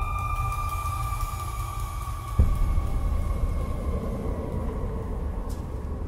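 Trailer score and sound design: a deep rumbling drone under a high held tone that slowly sinks in pitch, with a single deep boom about two and a half seconds in.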